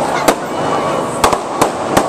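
Aerial fireworks going off overhead: about five sharp bangs, two of them close together about a second and a quarter in, over a steady background of crackle and noise.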